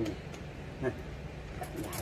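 A few light clicks and knocks of the folding electric scooter's seat post and its clamp being handled, over a low steady hum.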